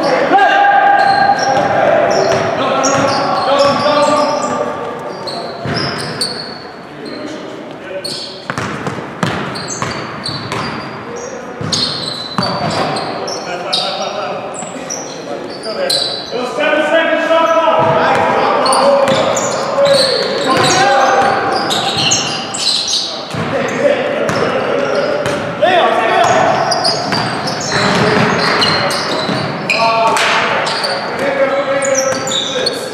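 Sounds of an indoor basketball game: a basketball bouncing on the hardwood court among players' shouts and calls, echoing in the gymnasium.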